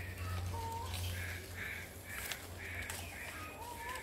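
Birds calling: a run of short, harsh calls repeated about twice a second, with two brief whistled notes, one early and one near the end, over a steady low hum.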